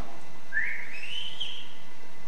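A single whistle rising in pitch, about a second long, coming from offstage.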